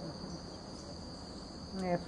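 Steady high-pitched insect trill in the background, unbroken through the pause.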